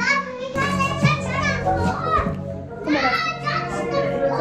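Young children's voices shouting and calling out as they play, over music playing in the background.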